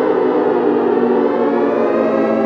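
Civil-defence nuclear warning siren wailing loudly and without a break. Its pitch sinks slowly, then starts to climb again near the end.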